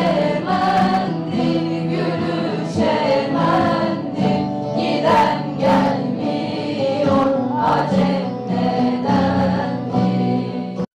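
Mixed choir of men and women singing a song together, accompanied by acoustic guitars, at a steady level.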